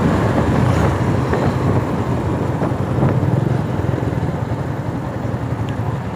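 Yamaha R15 V4 motorcycle's single-cylinder engine running steadily while riding along, with wind rushing over the microphone.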